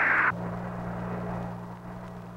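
A burst of radio static hiss on the air-to-ground voice channel cuts off about a third of a second in. It leaves a steady low hum.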